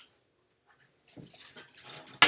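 A pug making a few short, rough sounds in the second half, after a near-silent first second.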